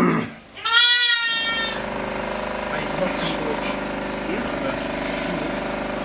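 Sheep bleating: a short bleat at the start, then a loud bleat lasting about a second. After that a steady droning hum with many tones sets in and holds, with fainter bleats over it.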